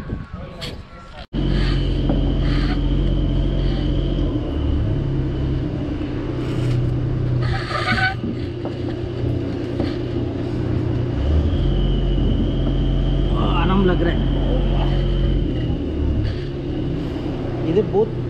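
A motor running steadily with a low hum and a faint high whine above it, starting abruptly just over a second in and shifting in pitch a few times.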